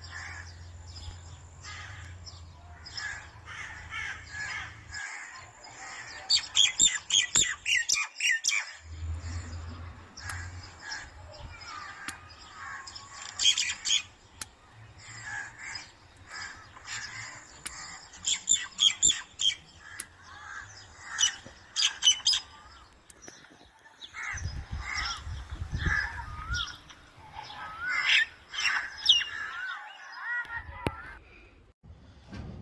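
Birds chirping and calling in repeated bursts of quick calls, with a low rumble at times underneath.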